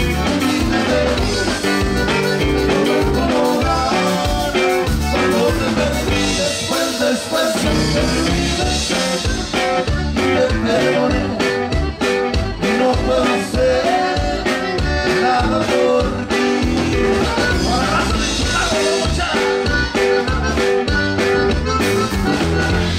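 Live conjunto music played by a band: a diatonic button accordion carries the melody over strummed guitar and a drum kit keeping a steady beat.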